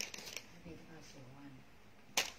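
Brief soft rustling of a knitted garment and plastic wrapping being handled, mostly in the first half-second, followed by a faint voice in the background.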